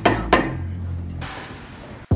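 Hammer blows on a Jeep Wrangler's rusted rear brake rotor, knocking it loose from the wheel hub it has rusted onto: two quick strikes about a third of a second apart, then the metallic ringing dies away.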